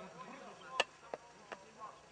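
Three sharp clicks or knocks about a third of a second apart, with faint chirping in the background.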